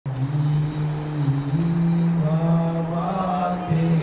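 Low male voices chanting a Hindu mantra in a sustained drone, the pitch holding steady and stepping up and down a few times, with a higher voice line rising and falling about halfway through.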